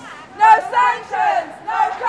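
Protest marchers shouting a chant, raised voices in short rhythmic phrases.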